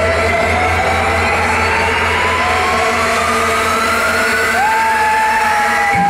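Electronic dance music build-up played loud over a club sound system: a synth tone rising steadily in pitch over a held bass, with no beat. A second held synth tone comes in about two-thirds of the way through, just before the drop.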